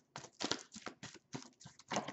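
A deck of oracle cards being shuffled by hand: a quick, even run of card slaps, about five a second.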